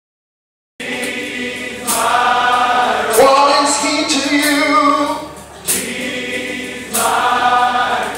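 A large group of voices singing a gospel song together, loudly, starting just under a second in after a brief silence.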